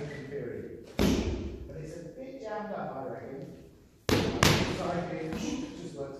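Strikes smacking into focus mitts and a kick pad: one sharp smack about a second in, then two more close together about four seconds in, each echoing in the hall.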